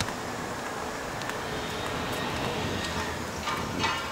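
Steady outdoor background noise of a city street, with a faint high thin whine running through it and a few light clicks.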